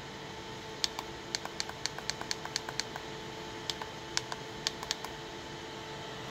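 Rapid run of sharp clicks from a thumb repeatedly pressing the buttons of a handheld Velleman oscilloscope to step its timebase down, with a pause and a few more presses after it. A faint steady hum runs underneath.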